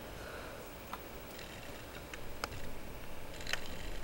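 A few sharp, separate computer mouse clicks, spaced irregularly, over a faint steady hiss.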